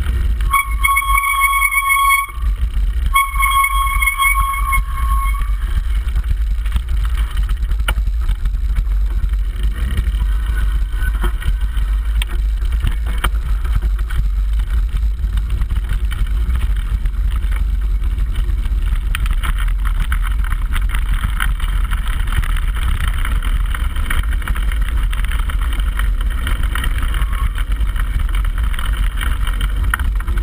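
Wind buffeting a mountain-bike camera's microphone, with the rumble of knobbly tyres rolling over a gravel forest track, steady throughout. Near the start a high-pitched squeal sounds twice, each held for about two seconds.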